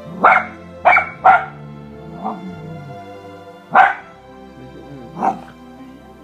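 A puppy barking close by: three quick sharp barks in the first second and a half, then two more a second or so apart, with a fainter yip between them.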